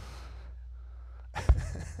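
A low steady hum, then one short sharp thump on a close microphone about one and a half seconds in, followed by a breathy puff.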